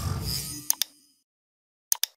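Subscribe-animation sound effects: a whooshing swell fades out within the first second. Two quick mouse clicks come just before it ends, and a third click comes near the end as the bell is pressed.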